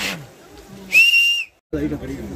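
One short, steady high whistle about a second in, lasting about half a second, from someone in a group of people, and then cut off suddenly.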